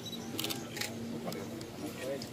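A few camera shutter clicks, two close together about half a second in and another shortly after, over background voices of a crowd talking.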